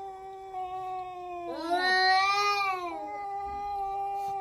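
Two cats yowling at each other in a standoff. One long, low, steady yowl runs throughout, and a second, higher wail swells up and falls away over it in the middle.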